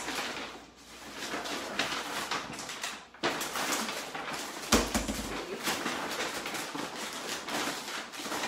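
Rummaging and rustling while digging for a receipt: a continuous crackly rustle with small clicks, and one thump about halfway through.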